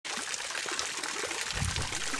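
Water running from the curved metal spouts of a stone fountain in thin streams, a steady, even trickling hiss.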